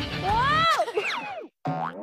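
Cartoon 'boing' sound effect: a springy tone that glides up and then falls, followed by a second short rising one near the end. Background music plays under it and stops just before the first glide fades.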